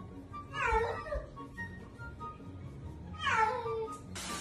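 A domestic cat meowing twice, each call long and sliding down in pitch, the second near the end.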